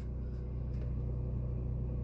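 A steady low hum runs unbroken, with no other sound standing out.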